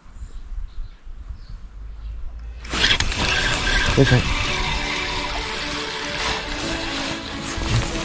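Faint low rumble for the first few seconds, then background music starts suddenly and runs on steadily, with a voice-like pitched line in it.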